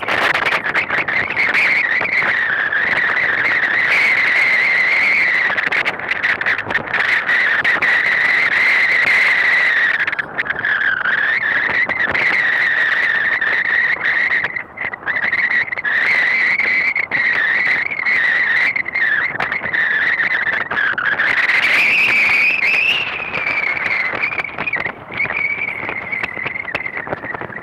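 A motor yacht's engines running under way, with a loud, high whine that sets in suddenly and wavers up and down in pitch as the boat manoeuvres, over a rushing noise.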